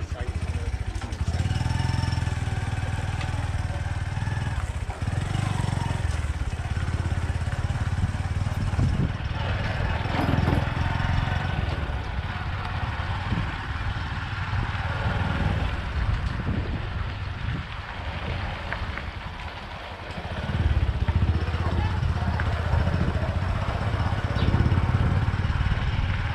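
Bodaboda motorcycle taxi's small engine running as it carries two riders along a dirt road. It eases off about three-quarters of the way through, then picks up again.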